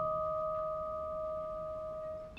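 A single vibraphone note ringing on and fading slowly, a pure tone with one higher overtone.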